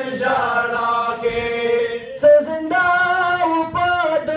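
Men's voices chanting a noha, a Muharram mourning lament, together in long drawn-out lines. About halfway through, a single sharp smack cuts in briefly.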